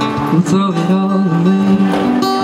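Acoustic guitar being strummed steadily, with a young man singing over it.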